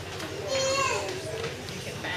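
Children's voices chattering in a room, with one child's voice rising clearly above the rest from about half a second in to about a second in.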